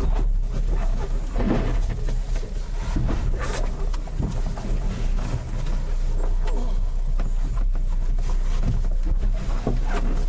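A steady low rumble runs throughout, with several short rustles and knocks from movement close to the microphone.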